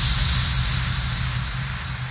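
Tail of a logo sound effect: a hissing wash over a steady low hum, slowly fading out.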